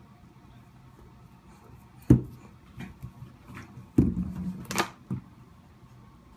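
A small toy ball dropped by a baby, knocking as it falls and hits: one sharp knock about two seconds in, then a louder run of thumps and knocks from about four seconds in.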